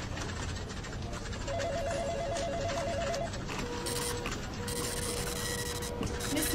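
Electronic telephone ringer warbling in a fast two-tone trill for about two seconds, from about a second and a half in. After it a steady held tone sets in and carries on, over a faint hiss.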